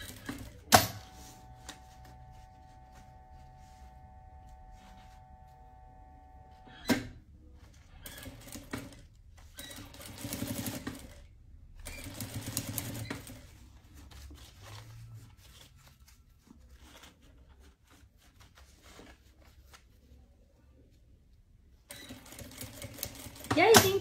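Industrial sewing machine stitching bias binding around a curved fabric edge in stop-start runs. There is a sharp click about a second in, then a steady hum until a second click about seven seconds in, then several shorter stitching runs.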